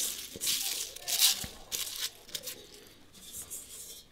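Folded paper slips rustling and crinkling as a hand rummages through them inside an old metal helmet. The rustling comes in several scratchy bursts, strongest in the first second and a half, then fainter.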